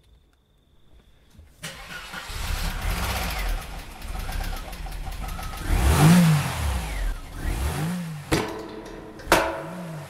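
A car engine starts abruptly after about a second and a half, then is revved repeatedly, its pitch rising and falling several times as the car pulls away hard. The sound breaks off sharply twice near the end.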